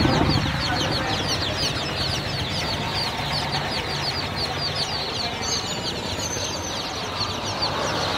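Chorus of many baby chicks crowded in a basket, peeping: a dense, continuous stream of short, high, falling peeps overlapping one another.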